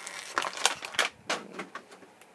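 Plastic packaging and a plastic action figure crackling and clicking as the figure is worked free of the rubber bands that hold it in its tray. There are several sharp crackles a second, quieter near the end.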